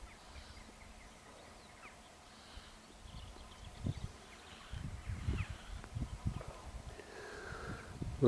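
Faint outdoor ambience: scattered short bird calls, with gusts of wind buffeting the microphone in irregular low rumbles from about four seconds in.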